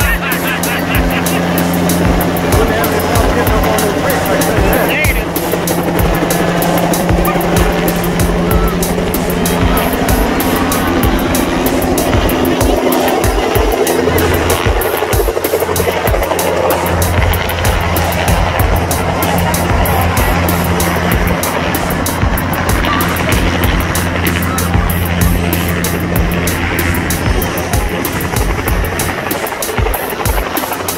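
Light single-rotor helicopter lifting off and flying low overhead, its rotor chop steady and loud. Music plays over it, with low notes that shift every few seconds.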